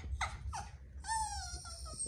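Small dog, a Bichon Frise, whining from nervousness: two short falling whines, then a longer high whine about a second in that drops slightly in pitch.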